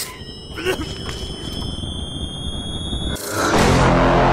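A high-pitched electronic whine of several steady tones, rising very slightly, cut off about three seconds in by a loud rushing whoosh with a deep low rumble.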